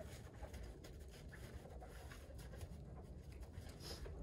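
Faint, irregular rubbing and scratching of a car's front wheel and tyre being wiped and scrubbed by hand.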